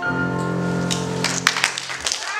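Grand piano's final chord ringing out and fading. About a second in, audience applause breaks in and takes over.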